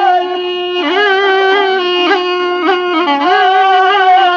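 Traditional Azerbaijani ashiq instrumental music: a reed wind instrument plays a sustained melody that bends and slides between held notes.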